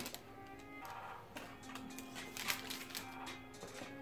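Soft background music with held notes and light high ticks.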